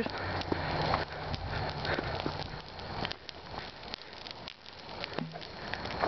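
Small brush fires crackling, with scattered sharp clicks and rustles of movement close to the microphone, and a faint low hum in the first few seconds.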